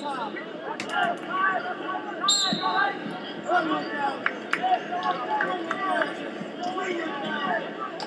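Arena crowd noise: many overlapping voices chattering and calling out, with a few sharp clicks and a brief high-pitched tone about two seconds in.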